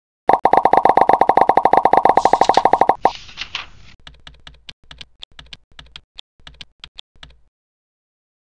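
Sound effects of an animated logo intro. First comes a rapid, loud run of pitched pops, about fifteen a second, for nearly three seconds. A short whoosh follows, then a few seconds of sparse, quieter clicks.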